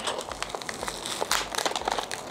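Brown kraft paper sleeve and clear plastic wrap around a potted plant crinkling as they are handled and pulled open: an irregular run of rustles and small crackles, with a louder rustle a little past halfway.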